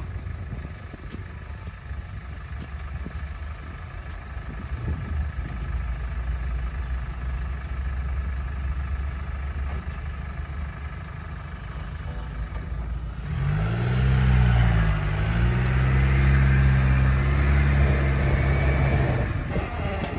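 Jeep Wrangler Unlimited's engine running at low revs, then, about thirteen seconds in, revving up louder, dipping and holding higher revs under load as the Jeep climbs a steep dirt mound; the revs drop back just before the end.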